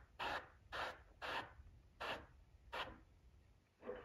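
Airbrush spraying in five short hissing bursts, about half a second apart.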